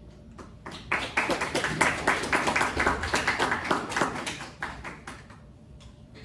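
Audience applauding: a burst of clapping that starts about a second in and dies away near the end.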